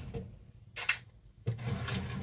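Light handling noise of a fountain pen section and a plastic syringe: a single sharp click a little under a second in, then soft rubbing from about halfway.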